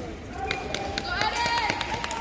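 Voices raised in a hall, one calling out over the others, with sharp scattered clicks and taps throughout.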